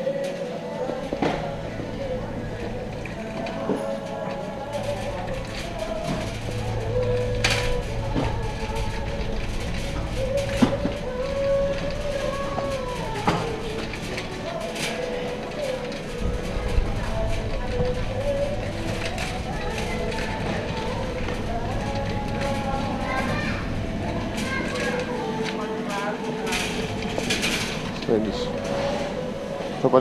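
A shopping cart rolling and rattling over a shop floor, with a few sharp knocks, under a store's background music with a voice in a large hall.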